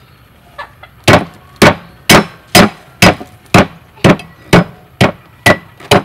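Cleaver chopping long beans on a wooden chopping board: a steady run of sharp chops, about two a second, starting about a second in.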